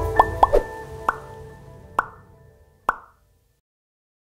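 Logo outro jingle: music dying away under a string of short, bubbly pop sound effects, the last pops about a second apart. It cuts off a little after three seconds in.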